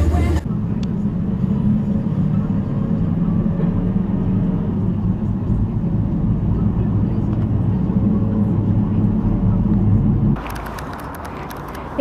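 Steady low engine and road rumble heard from inside a moving minibus. A bit of music cuts off at the very start. About ten seconds in, the sound switches abruptly to quieter street noise with faint clicks.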